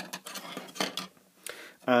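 A few light clicks and a small clatter from plastic LED lamp housings and their perforated circuit boards being handled and set down on a desk.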